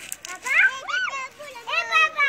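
A young child's high-pitched voice calling out twice, once about half a second in and again near the end, with no clear words.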